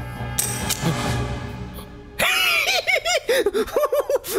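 Tense film-score music, then from about two seconds in a man's high-pitched, giggling laugh: a quick run of rising-and-falling "ha-ha" sounds over the music.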